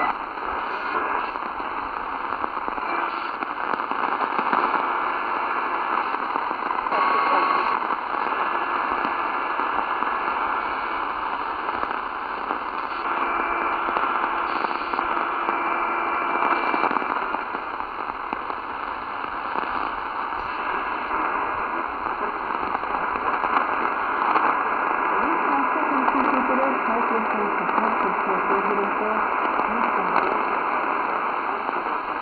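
Tecsun PL-450 portable radio on the longwave band, being tuned across it, its speaker giving steady static hiss with brief whistling tones as it passes signals. Near the end a whistle glides in pitch as the tuning moves.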